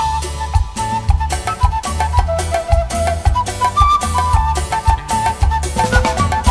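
Live band playing instrumental dance music: a high lead melody stepping over a steady bass beat and drums.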